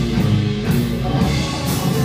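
Blues band playing live: electric guitar, electric bass and drum kit in a steady groove.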